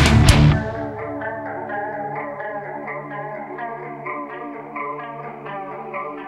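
Heavy metal song: the full band breaks off with a couple of loud hits right at the start, then a quiet passage of clean electric guitar with a chorus effect, picking a steady run of notes.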